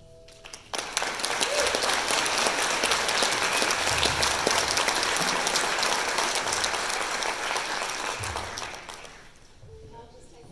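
Audience applause, breaking out about a second in, right after the choir's final chord, and dying away near the end.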